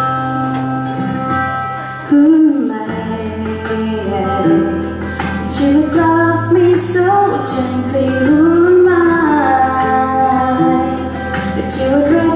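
A woman singing a slow worship song into a microphone, holding and sliding between notes over instrumental accompaniment with steady low bass notes.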